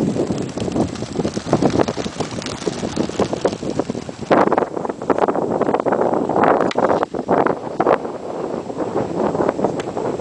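Wind buffeting the camera microphone in loud, irregular gusts, heaviest in the middle of the stretch.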